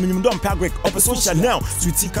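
A man rapping a freestyle verse in short, quick phrases over a hip hop beat with a steady low bass.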